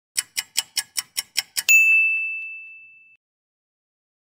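Title-card sound effect: eight quick ticks, about five a second, followed by a single bright ding that rings on one clear tone and fades out over about a second and a half.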